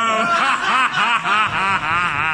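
A man laughing in a quick run of short bursts, about four or five a second.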